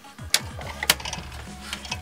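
Sharp plastic clicks and knocks from a toy grand piano's lid being raised and propped open. The two loudest come about a third of a second and a second in, with smaller clicks near the end.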